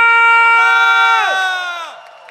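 A man's voice through the microphone holds a long, drawn-out shout on the last syllable of a name being announced, and a second held voice joins in just after. The first voice slides down in pitch and breaks off a little past the middle; the second drops away near the end.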